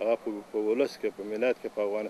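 Only speech: a man talking in Pashto, in short phrases with brief pauses.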